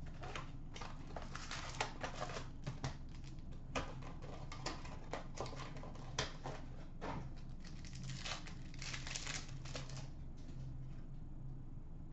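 An Upper Deck Trilogy hockey card box being opened and its wrapped packs handled and torn open: a run of light clicks, taps and rustles of cardboard and wrapper, with a longer stretch of crinkling about two-thirds of the way through.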